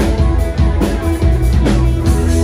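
Live rock band playing: ringing electric guitar chords over a steady drum-kit beat.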